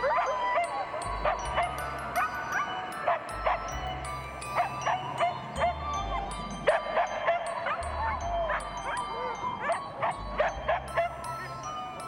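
A team of harnessed sled huskies whining and yipping in many short rising and falling calls, over background music with a low bass line.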